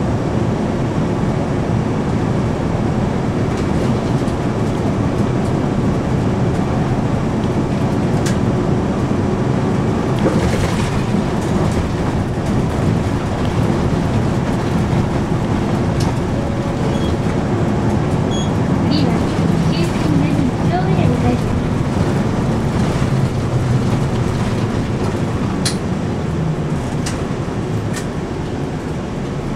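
Inside a Hiroden route bus while it drives: steady engine running and road noise, with a few light clicks and rattles. It eases slightly near the end.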